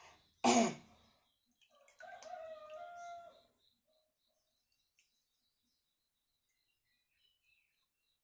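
A single cough about half a second in, followed about a second and a half later by a short held vocal sound at a steady pitch, lasting about a second and a half.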